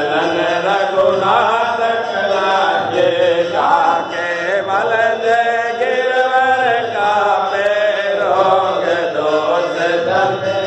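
A Hindu aarti hymn chanted in a melodic, unbroken vocal line, sung devotionally during the lamp-waving rite.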